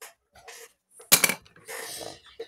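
A small hard plastic pencil-lead case set down on a tabletop mat. It lands with one sharp clack about a second in, followed by a short rustle of handling.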